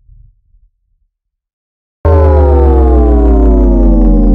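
A cinematic downer bass sound effect: after the last of a previous low rumble fades out and a second of silence, a loud synthesized bass tone starts suddenly about halfway in, heavy in the low end with a stack of overtones all sliding slowly down in pitch.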